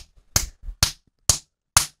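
Four short, sharp percussive hits, evenly spaced about half a second apart, tapping out the steady beat of minimal house music.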